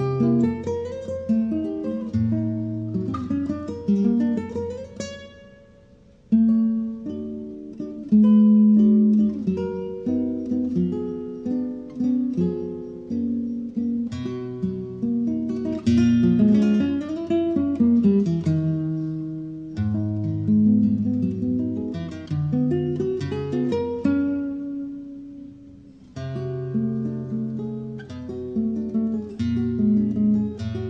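Solo nylon-string acoustic guitar played live: a fingerpicked melody over bass notes and chords. Twice a chord is left to die away almost to nothing before the next phrase comes in.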